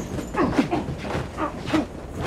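Two men grunting and straining with effort in a hand-to-hand fight: a run of short, strained vocal sounds, several to the second, with light scuffling knocks.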